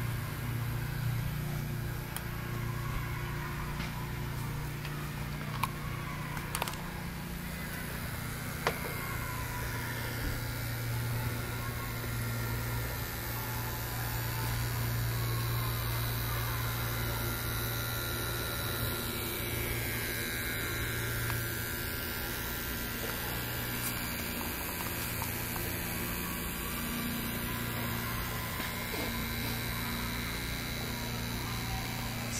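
Steady mechanical hum with a faint hiss from an Aster Union Pacific FEF 4-8-4 live-steam model locomotive as it steams up, with a few light clicks between about five and nine seconds in.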